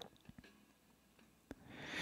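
Near silence in a gap of a solo lead vocal recording: a few faint mouth clicks, then a soft inhale by the singer near the end, leading into the next line.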